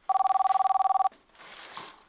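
Mobile phone ringing: one trilling two-tone ring, rapidly pulsing, lasting about a second, followed by a fainter noise.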